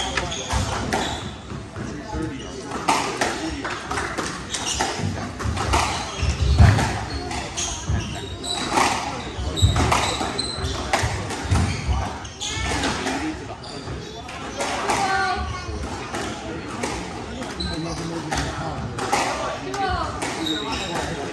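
Squash rally: the hard rubber ball struck by racquets and smacking off the court walls, a run of sharp, irregular impacts echoing in a large hall, with spectators talking.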